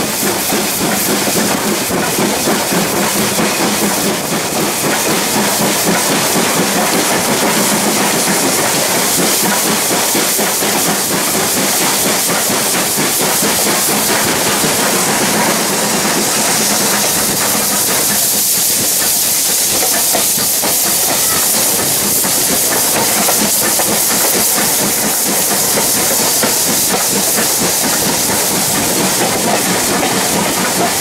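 Steam tank locomotive 80080, a BR Standard Class 4 2-6-4T, under way, heard from alongside its footplate: a loud, steady hiss of steam over the running noise of the wheels on the rails.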